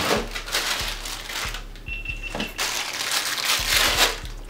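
Rustling of plastic wrap and packaging with small knocks as a wireless handheld microphone is taken out of its box, with a brief high squeak about two seconds in.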